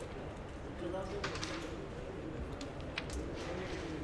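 A few sharp clicks from a carrom board, the striker knocking into the wooden carrom men: two about a second in and one near three seconds, over faint murmured voices.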